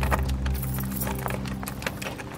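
A bunch of keys jangling and clicking against a door lock as a key is tried in a lock that won't open.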